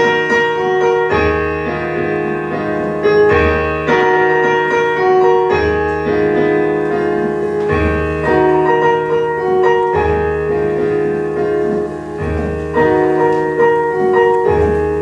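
Solo piano playing slow, sustained chords, a new chord with a low bass note about every two seconds: the accompaniment's introduction before the singer comes in.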